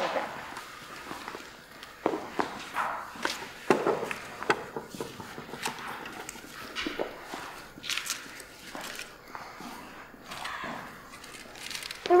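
Footsteps on a wooden stage floor: light, irregular steps and small knocks as two people walk about.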